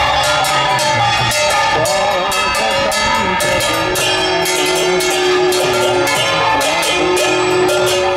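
Live devotional kirtan: brass hand cymbals struck in a fast, steady rhythm, about three to four strikes a second, with drumming and singing voices.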